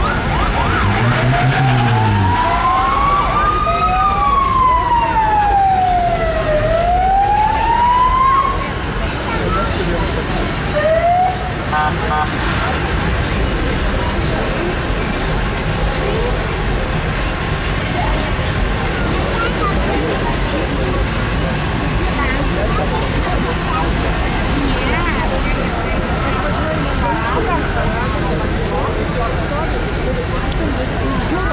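A vehicle siren wailing, its pitch sweeping slowly up and down for about eight seconds, then a short whoop about eleven seconds in; after that, steady street noise of vehicles and people.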